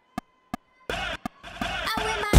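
A band's count-in: sharp clicks, like drumsticks struck together, about a third of a second apart. After about a second a louder, sustained sound of the song's intro starts.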